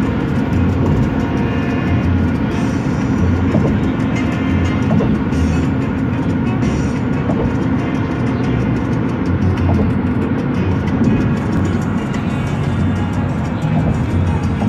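Music playing over the steady road and engine noise of a car driving at highway speed, heard from inside the moving car.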